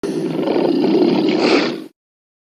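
An animal roar sound effect lasting about two seconds. It starts suddenly and tails off just before the end.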